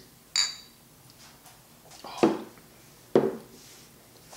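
Two beer-filled pint glasses clinking once in a toast, a short high ringing chink. About two seconds later come two louder knocks a second apart as the glasses are set back down on the wooden table.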